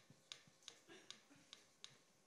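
Faint taps and clicks of a marker tip on a board as words are written by hand, about four irregularly spaced clicks.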